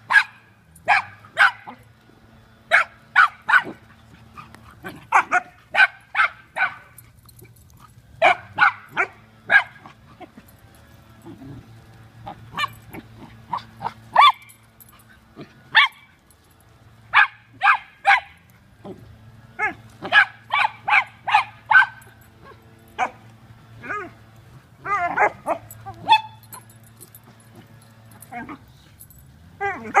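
Dogs barking in rough play-wrestling, with short sharp barks coming in quick clusters of two to four, again and again.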